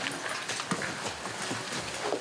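A group of people getting to their feet: scattered irregular knocks, shuffling and rustling.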